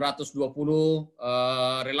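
A man's voice holding drawn-out hesitation sounds: two long, steady "uhh" vowels with short speech fragments between them.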